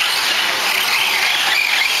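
Several radio-controlled 4WD short course trucks racing on a dirt track: a steady mix of motor whine that wavers up and down with the throttle.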